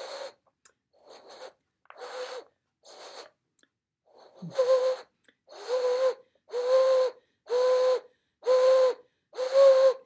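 Blowing across the mouth of a plastic water bottle. The first few breaths are airy puffs that give no note. From about halfway the bottle sounds: six short hooting notes at one steady, fairly high pitch, about a second apart. The note is high because the bottle has little air space inside.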